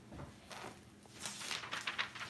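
Faint rustling and small clicks of something being handled close by, with a quick cluster of them in the second half.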